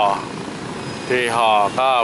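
Steady street traffic, mostly motorbikes with a few cars, heard as an even rumble and hiss in a short gap between a man's speech.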